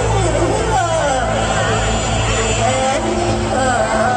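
Loud amplified sound over a dense festival crowd: a voice swooping repeatedly down and up in pitch above a steady low hum.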